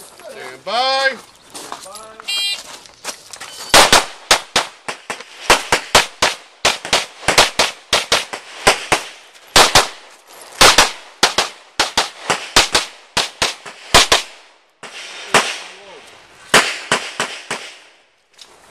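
A shot-timer start beep, then a pistol fired in a rapid string of shots, many in quick pairs, running for over ten seconds with one brief pause.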